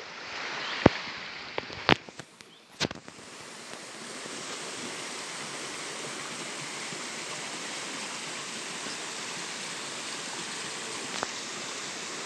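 A river rushing over rocks, a steady rush of fairly full running water. A few sharp clicks come in the first three seconds, while the rush briefly drops.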